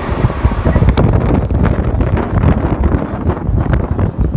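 Loud low rumble of a vehicle riding beneath elevated steel rail tracks, with wind buffeting the microphone and rapid clattering from about a second in.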